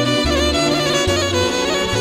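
Instrumental passage of Romani folk music from a band of violin, accordion, electric guitar and keyboard, the violin carrying an ornamented, wavering melody over bass notes that change about every half second.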